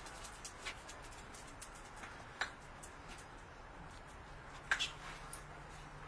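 A few brief, sharp sounds from the dogs at the doorway, the loudest a quick pair near the end, over a faint low hum.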